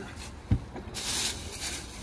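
A dull thump about half a second in, then a plastic bag rustling briefly as it is handled.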